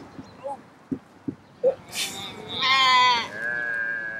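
A person imitating a sheep, giving a loud, wavering bleat about two and a half seconds in, followed by a steadier held note. A few soft knocks and clicks come before it.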